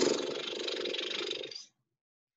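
A woman's long, audible exhale, loudest at the start and fading away over about two seconds, with a rough, rasping texture: a deliberate, expressive breath out.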